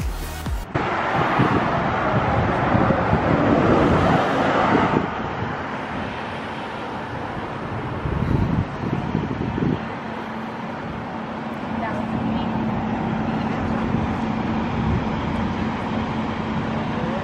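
Background music cuts off under a second in, giving way to outdoor road noise: a vehicle drives past close by for the first few seconds, then a quieter steady hum with a few light knocks.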